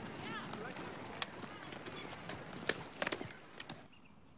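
Faint outdoor background ambience with distant voices, and a few sharp clicks or taps, most of them in the second half.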